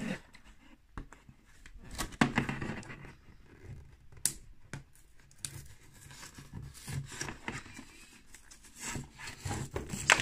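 Cardboard-backed plastic blister pack of an action figure being handled, with scattered crinkles and clicks from the card and bubble; near the end the card is peeled and torn away from the plastic as the pack is opened.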